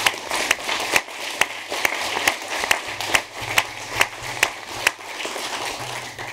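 A small audience applauding, with a few louder single claps standing out above the steady patter of hands; it thins a little near the end.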